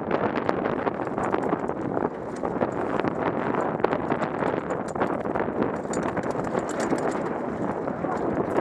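Mountain bike rattling down a rocky dirt trail: tyres crunching over gravel and loose stones, with a dense run of small clicks and knocks from the bike being shaken over the rough ground.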